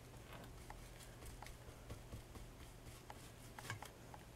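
Faint soft scratching and light taps of a paintbrush working thick paint onto a bamboo mat and dipping into a paint pot, with one slightly louder tap near the end.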